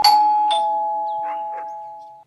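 Doorbell ringing: a held two-note electronic chime, loudest at the start and fading away through the two seconds, with a sharp click at the start and another about half a second in.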